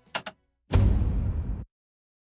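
A cinematic fire sound effect played soloed from a mix: a sudden burst of flaring whoosh with a deep rumble, lasting about a second and cutting off abruptly, its hiss thinning as it goes. Two quick clicks come just before it.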